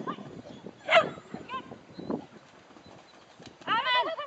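Shetland sheepdog barking while running an agility course: one sharp, loud bark about a second in, then shorter, fainter barks. A person's voice starts near the end.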